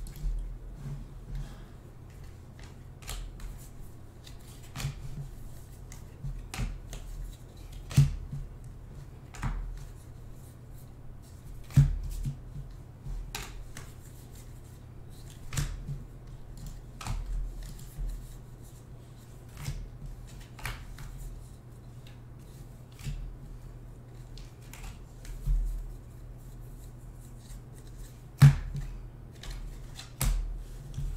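2020 Bowman baseball cards being handled and flipped through by hand. Irregular clicks, taps and slides of card on card and on the table, with a few sharper taps, over a steady low hum.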